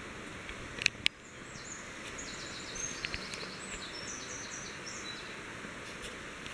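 Outdoor background ambience with a small bird singing a run of short, high, quick notes from about a second and a half in until about five seconds. Two sharp clicks come about a second in.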